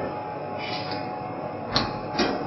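Metal locking device of a switchgear interlock being worked by hand: a soft sliding scrape of its bolt, then a sharp metal click near the end. Steady low room noise lies underneath.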